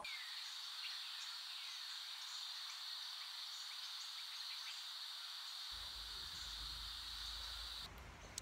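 A steady, high-pitched chorus of insects: a continuous shrill drone over a light hiss that stops just before the end.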